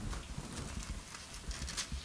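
Bible pages being turned by hand: a few faint, short paper rustles and ticks over a low steady hum.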